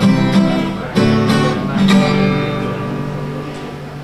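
Two acoustic guitars playing the closing strums of a song, a few chords struck in the first two seconds, then the last chord left to ring and fade away.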